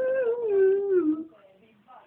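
A young woman's voice holding one long drawn-out vowel, level at first and then sliding down in pitch, stopping about a second and a half in.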